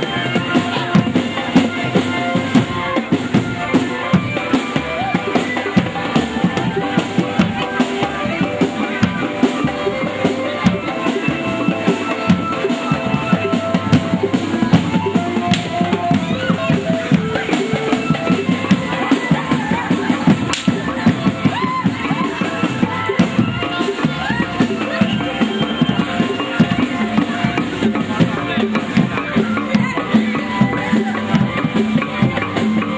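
Javanese jaranan ensemble playing: kendang hand drums keep up a fast, dense beat while held melodic tones run over it without a break.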